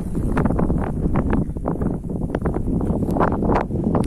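Wind buffeting the phone's microphone in an open field, a steady low rumble, with many short irregular crackles of dry wheat stubble underfoot.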